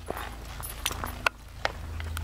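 A horse's hooves stepping on a gravelly road: about four separate footfalls as the horse shifts and turns.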